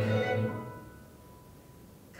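Musical accompaniment with strings holding a chord that dies away over the first second, leaving a quiet pause with only a faint held note.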